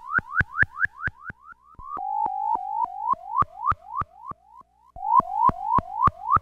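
Minimoog synthesizer sounding a string of short, rising pitch sweeps, about four a second, each starting with a click. About two seconds in, the sweeps drop lower and flatter, then climb higher again near the end.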